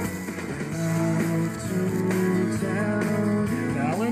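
Music from an FM radio station, played through a vintage Pioneer SX-3700 stereo receiver and heard from its loudspeakers in the room.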